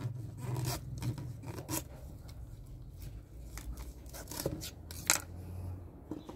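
A knife cutting through a thick, fibrous Grammatophyllum speciosum orchid pseudobulb between its nodes, in a run of short, irregular crunching and scraping strokes. A sharper knock comes about five seconds in.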